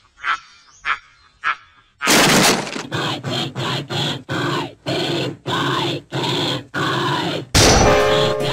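Cartoon steam locomotive chugging, a loud burst about two seconds in and then an even run of chuffs, about two to three a second, with a falling pitch in each. A few short, sharp clipped sounds come before it.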